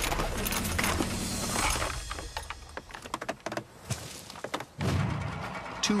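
Wooden counterweight trebuchet just after release: a rush of noise as the beam swings through over the first two seconds or so, then scattered knocks and rattles from the timber frame and the chains hanging from the beam as it rocks, with a louder thud near the end.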